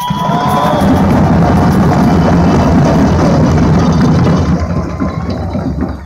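Parade drum band playing loudly: many drums beating together in a dense, continuous mass of low drum sound that starts abruptly and fades away near the end.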